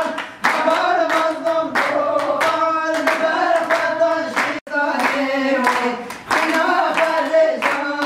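A group of women singing together while clapping their hands in a steady beat, a few claps a second. About halfway through the sound cuts out for an instant, then the singing and clapping go on.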